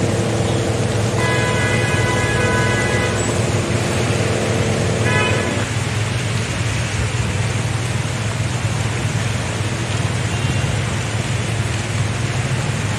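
Rain falling on a flooded road, with wet traffic and a steady low rumble underneath. For about the first six seconds a held, steady tone sounds over the rain, loudest and highest for about two seconds early on, with a short blast about five seconds in.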